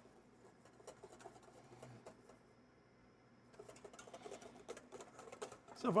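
Wire whisk beating egg yolks for hollandaise in a stainless steel bowl over a double boiler: faint, rapid ticks and scrapes of the wires against the bowl, easing off briefly in the middle.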